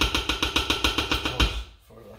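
Spatula beating cheesecake batter in a stainless steel mixing bowl: a fast, even run of about ten scraping strokes a second, with the bowl ringing, that stops about one and a half seconds in.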